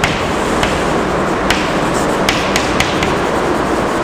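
Chalk writing on a chalkboard: several sharp taps and strokes of the chalk over a steady background hiss.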